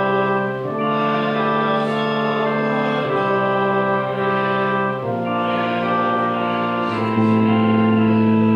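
Church organ playing a hymn in held chords that change about every two seconds, growing a little louder near the end.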